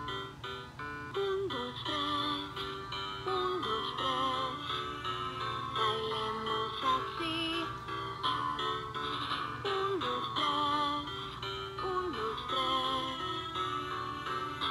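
LeapFrog Learn & Groove Color Play Drum playing an electronic classical tune through its speaker, a melody of held notes, some with a wavering pitch.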